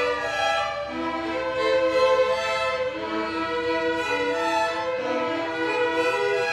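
Youth string orchestra of violins and cellos playing a classical piece, bowed notes sustained and layered in several parts.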